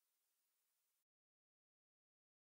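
Silence: the audio track is empty, with only an extremely faint hiss that cuts out completely about a second in.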